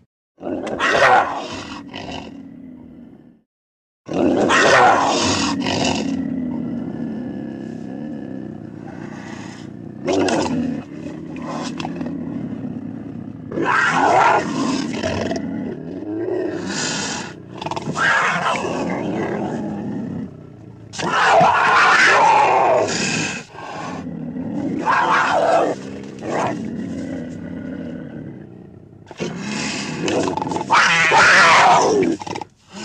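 Black panther's roars and growls from an animated film, a string of separate roars, some short and some drawn out, with brief pauses and a short silence about three and a half seconds in.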